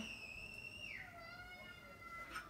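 A faint, thin, high whistling tone held at one pitch, which slides down to a lower steady pitch about a second in.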